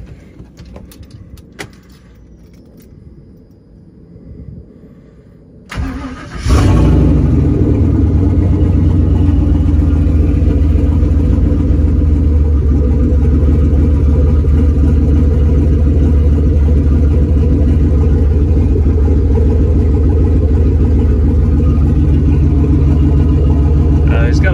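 Turbocharged 6.0-litre LS V8 being started: a few clicks, then a short crank about six seconds in. It catches and settles into a steady idle of about 880 rpm.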